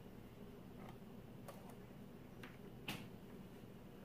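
A few faint clicks and taps from a flat iron and paddle brush being handled while straightening hair, the loudest about three seconds in, over a low steady hum.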